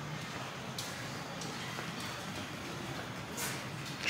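Steady low background noise of a large indoor hall, with a couple of faint clicks and no distinct event.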